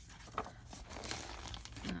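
Magazine pages rustling and crinkling irregularly as they are handled and pulled apart, with a few sharper paper crackles.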